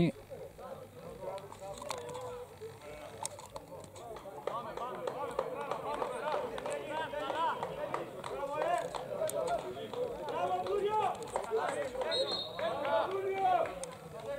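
Several men's voices talking at a distance, overlapping, with no single clear speaker. The talk grows busier and louder a few seconds in.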